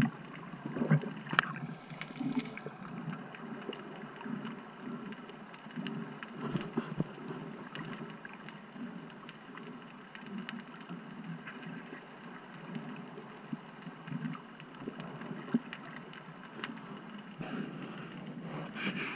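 Underwater ambience recorded by a submerged camera: a muffled, uneven rush of water movement with many faint scattered clicks and crackles.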